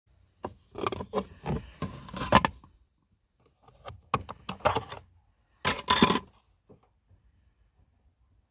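Sharp plastic clicks and rattles from a hand working the boot-floor access cover and the yellow emergency handbrake-release handle of a Renault Scenic, coming in three short clusters.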